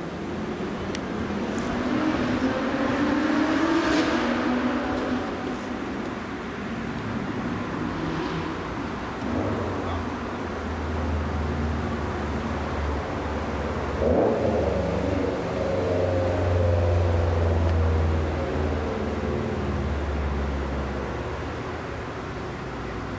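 Metrolink diesel commuter train approaching. Its engine comes in as a steady low hum from about ten seconds in and grows louder, over road traffic heard passing earlier.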